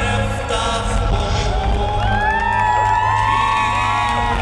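Amplified concert music with a heavy, steady bass, heard from within the audience. From about a second and a half in, the crowd cheers and screams over it, many voices rising and falling.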